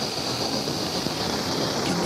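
A steady rushing noise with a constant high hiss over it, unchanging throughout.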